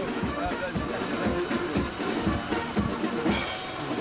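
Drums beating a quick steady rhythm, about three beats a second, with voices over it.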